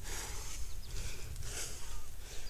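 Outdoor ambience: a steady low rumble on the phone microphone with a few faint, short, high chirps.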